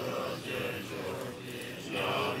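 Tibetan Buddhist monks chanting prayers together, a steady voiced recitation.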